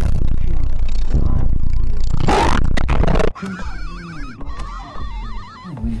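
Edited-in sound effect: a dense low rumble with a noisy swell about two seconds in. About three seconds in it gives way to a warbling tone with a fast, wide vibrato.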